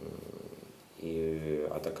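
A man's hesitant drawn-out vowel between words. It comes first in a low, creaky voice, then is held at a steady pitch for under a second before ordinary speech resumes near the end.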